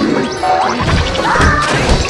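A jumble of cartoon sound effects layered over music, with crash-like hits in the middle.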